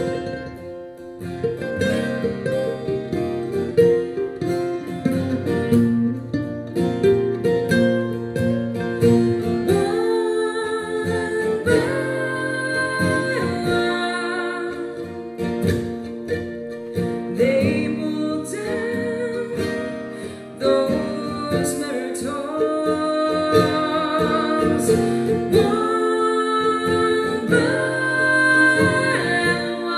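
Mandolin and acoustic guitar playing a tune together.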